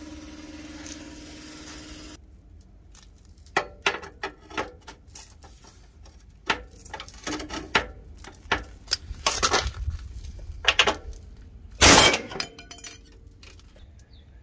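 A steady hiss, then irregular sharp metal clinks and knocks with a few short bursts from a pneumatic air hammer, the loudest about twelve seconds in, as a riveted crossmember is knocked loose from a badly rusted steel truck frame.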